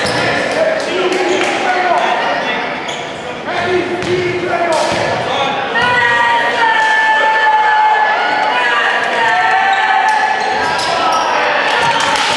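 Basketball bouncing on a hardwood gym floor, sharp knocks ringing in a large echoing gym, with voices calling out over them.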